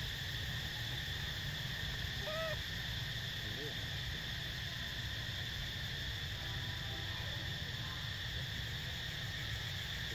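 Steady outdoor background noise with a low rumble and a constant high drone, broken by one short whistled call about two and a half seconds in and a few fainter short calls later.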